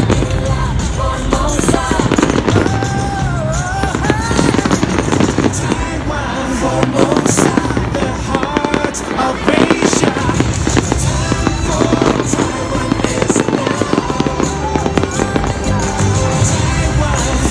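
Fireworks bursting in close succession during an aerial display, many cracks and booms one after another, with music playing along with the show.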